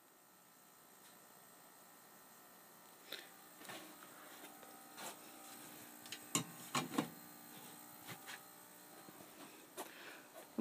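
Faint steady hum and hiss with a few light clicks and knocks between about three and seven seconds in, as of a phone being handled and moved around.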